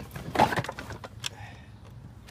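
Objects in a plastic storage bin being handled and rattled as a hand rummages through them, with a short cluster of knocks about half a second in, then quieter handling.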